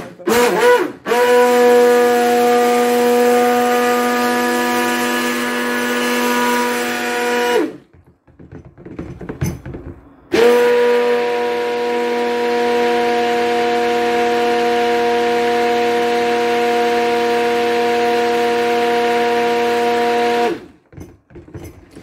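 Electric stick blender running in a jug of soap batter of oils and lye solution, mixing it toward trace. It runs in two steady bursts of about six and ten seconds, with a short break between them.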